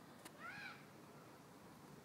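Near silence with one short, faint high call about half a second in that rises and falls in pitch.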